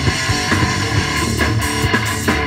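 Live rock band playing a passage without vocals: electric guitars strummed over bass guitar and drums.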